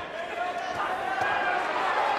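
Boxing arena crowd noise with faint shouting voices while the fighters exchange in the ring.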